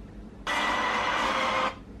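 A steady hiss of noise lasting a little over a second, starting and stopping abruptly.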